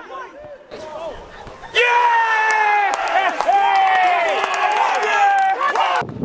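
Men yelling on a football pitch: scattered shouts, then from about two seconds in several loud, long drawn-out yells that overlap and sag slightly in pitch, with a few sharp knocks among them.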